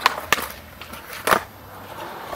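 Skateboard ollie on a concrete bank ramp: a sharp pop at the start, another click about a third of a second later, and the loudest clack of the board hitting concrete just past a second in, with the wheels rolling between.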